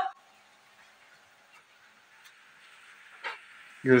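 Faint steady hiss of a pan of menemen cooking over a gas cylinder-top burner's flame, with one short noise a little past three seconds in.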